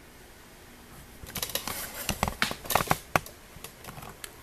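Light, irregular clicks and taps of hands handling a sewing machine and drawing thread through its upper thread guides, starting about a second in and stopping near the end.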